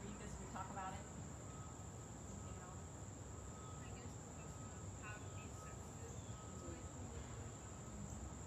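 Steady high-pitched insect chorus, a continuous thin trilling drone, faint under low background rumble, with a few faint short chirps.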